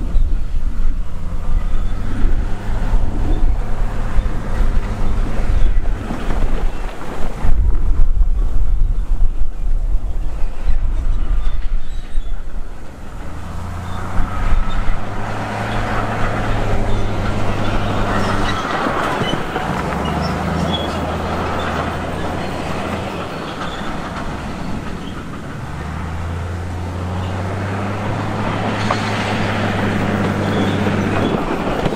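A diesel dump truck's engine runs while broken rock slides and tumbles out of its raised bed, a rough rumble with many small knocks through the first half. In the second half the engine's steady low hum carries on, dropping out and coming back a few times.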